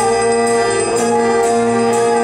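Instrumental accompaniment for a stage musical: an orchestra with brass holding sustained chords over a steady beat of about two beats a second.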